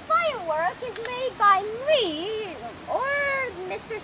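A child's voice making wordless, high, sliding vocal noises in a string of short squeals, with a longer held one about three seconds in.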